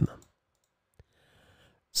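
A single short, sharp click about a second in, in a brief pause between stretches of speech.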